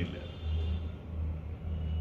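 A steady low rumbling hum in the background, with no speech over it.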